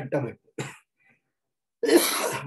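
A man's single short cough about half a second in, between spoken words.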